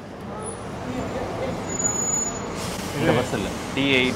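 A city bus pulling in close by, its engine and tyre noise swelling over the first few seconds. Voices come in near the end.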